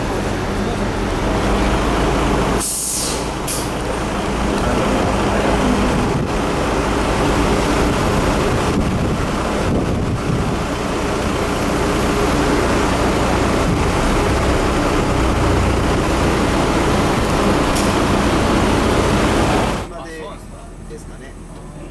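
Nissan Diesel U-RM bus's FE6 six-cylinder diesel engine running steadily, with a sharp burst of air-brake hiss about three seconds in.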